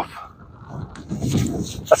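Wind buffeting the microphone: a low, uneven rumble that swells in the second half.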